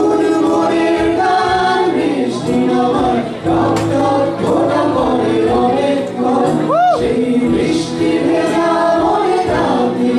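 Several voices singing a Bengali song together over keyboard and guitar accompaniment, amplified through PA speakers.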